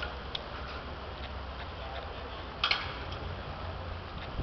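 Outdoor background sound: a steady low rumble on the microphone with faint voices around it, and a few sharp clicks, the loudest cluster about two and a half seconds in.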